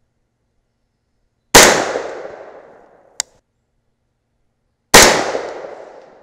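Two shots from an unsuppressed 300 AAC Blackout AR-style rifle firing handloaded 220-grain subsonic rounds, about three and a half seconds apart, each a sudden loud report with a ringing tail that fades over about a second and a half. A short sharp click falls between them. The load is running at about 1,057 feet per second, just under the speed of sound.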